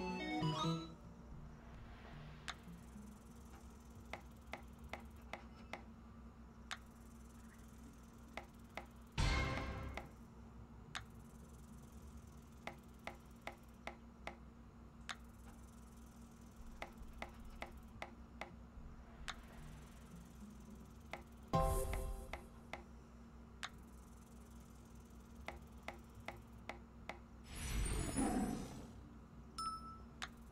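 Online video slot game sound effects: runs of quick clicks as the reels spin and stop, repeating with each spin, and a few short louder flourishes where a spin pays. A low steady background tone runs underneath.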